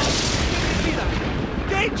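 Sudden rushing whoosh as the flying sleigh streaks past, hissy at first and dying away over about a second over a low rumble.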